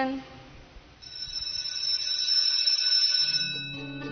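A held electronic chime of several steady high tones comes in about a second in, and a low drone joins near the end as the programme's signature music starts.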